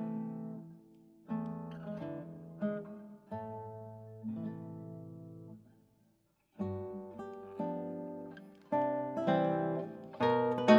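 Solo classical guitar playing a mazurka: plucked chords and notes that ring and fade. The playing stops briefly about six seconds in, then resumes louder.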